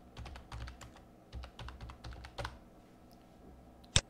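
Computer keyboard typing: a quick run of keystrokes for about two and a half seconds, then a pause and a single sharper click near the end.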